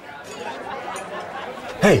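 Background murmur of many people chatting at once. Near the end a man calls out "hei!" loudly.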